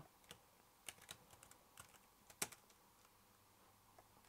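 Faint keystrokes on a laptop keyboard: a handful of scattered taps as a short command is typed, with one louder tap about two and a half seconds in.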